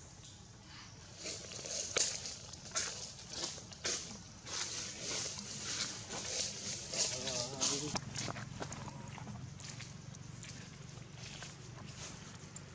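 Leaves and twigs rustling and crackling in a quick, irregular series as a monkey moves about in a leafy tree, dying down after about eight seconds. A short wavering call or voice is heard near the end of the rustling.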